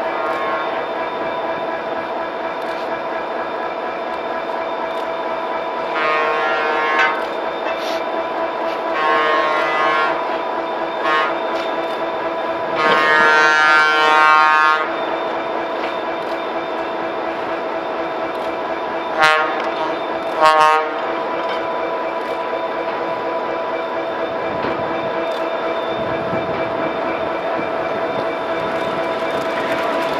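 Horn of an approaching railroad snowplow train sounding a series of blasts: three longer ones, the third the longest and loudest, then two short ones about a second apart. Under the blasts a steady hum continues, and it grows louder near the end as the plow arrives.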